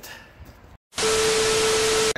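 TV static sound effect used as a video transition: a loud hiss with a steady beep tone running through it, starting about a second in after a moment of dead silence.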